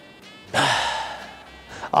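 A man lets out a loud sigh about half a second in, a long exhale of held breath that fades away over about a second.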